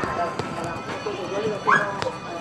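Overlapping background voices of people talking, with a short high-pitched cry from one voice near the end.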